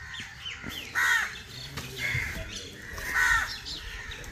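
A crow cawing three times, about a second apart.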